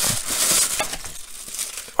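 Thin clear plastic packaging bag crinkling and rustling in the hands as it is unwrapped. It is busiest in the first second and dies away after that, ending with a single small click.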